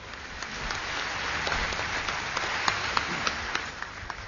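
Audience applause, a dense patter of many hands clapping that builds up just after the start and dies away near the end.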